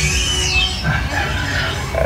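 Ride sound effect of an animatronic dinosaur: a high, falling shriek in the first half-second, then growling calls, over a steady low rumble of the ride.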